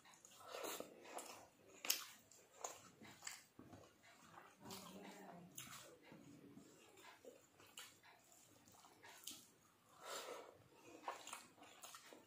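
Quiet close-up eating sounds of a person eating rice and fish with her fingers: irregular small clicks and wet lip smacks from chewing, with soft squishing of rice being mixed by hand on the plate.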